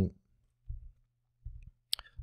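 Computer keyboard: a single sharp key click near the end, the Tab key cycling through PowerShell parameter completions. A couple of soft low thumps and a faint low hum come before it.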